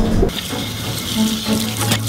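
Kitchen tap water running into a stainless-steel sink while dishes are rinsed under it, starting about a third of a second in as a steady splashing hiss.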